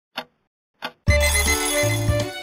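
Two cartoon clock ticks, then about a second in, intro music begins together with a rapidly pulsing alarm-clock bell ringing.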